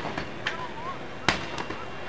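A long pole striking a shop's plate-glass window, giving sharp bangs: one about half a second in, a louder one about a second later, then a lighter knock. Voices of a crowd are faint in the background.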